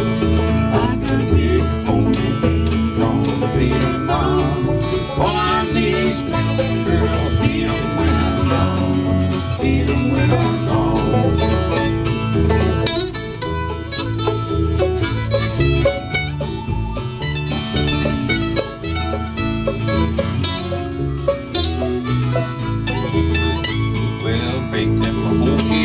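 A bluegrass string band plays an instrumental passage: banjo, mandolin and acoustic guitar over a walking upright bass line.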